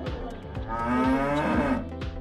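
A cow mooing once, a call of just over a second starting about half a second in, over music with a regular beat.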